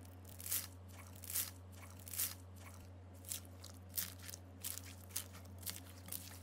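Small foam beads in a glass bowl crunching as a hand presses into them: short crisp crunches about once a second, coming faster in the second half.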